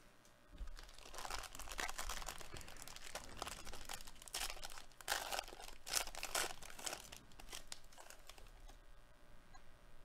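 A foil trading-card pack being torn open and crinkled by hand: irregular ripping and rustling, loudest around the middle, fading to lighter rustles near the end.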